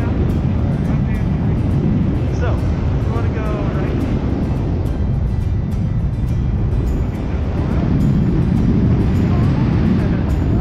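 Wind buffeting a camera microphone during parachute canopy flight: a loud, steady rumble with no break.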